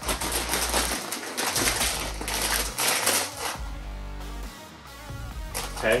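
A potato chip bag being pulled open and crinkled: dense, crackly rustling for about the first three and a half seconds, then it eases off. Background music plays throughout.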